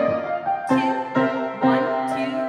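Piano accompaniment for a ballet barre exercise, a melody over chords with notes struck in a steady beat about twice a second.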